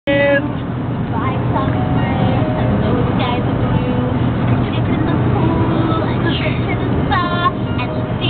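Steady low road rumble inside a moving car, with a boy's voice and music over it; a loud drawn-out sung note comes about seven seconds in.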